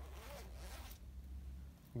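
A fur jacket's front zipper being unzipped, a run of about a second.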